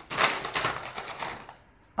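Clothespins clattering in a cardboard box as a hand rummages through them, a fast irregular rattle of small clicks that stops about a second and a half in.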